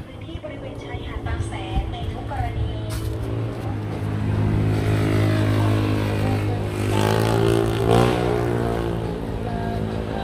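A motor vehicle's engine running close by, a steady hum that grows louder towards the middle. Its pitch bends about seven to eight seconds in as it passes, then it eases off.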